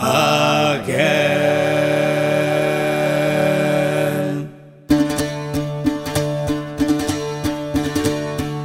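Male voices of a Scottish folk group singing unaccompanied in harmony, ending on one long held note of about three seconds. A moment after it stops, plucked strings (guitar and bouzouki) come in with an even picked rhythm.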